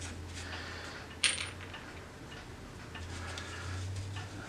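Small metal furniture tacks clink together once, about a second in, with a brief high ring. Faint handling noise and a low steady hum lie underneath.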